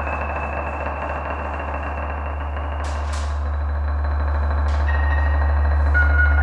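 Electric guitar and amplifier played as free-improvised noise: a steady low drone under a dense buzzing layer and held high tones, with a couple of brief hissing sweeps near the middle, swelling slowly louder toward the end.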